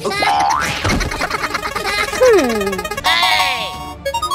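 Cartoon sound effects and wordless character noises over background music: a rising glide early on, a falling glide a little after two seconds, and a burst of warbling high sounds near the end.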